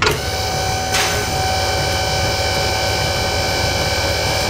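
Steady mechanical whirring sound effect of a motor raising a car carrier's upper ramp, with a sharp click about a second in.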